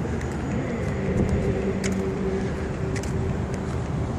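Road and engine noise heard from inside a moving car: a steady low rumble with a held hum and a few faint ticks.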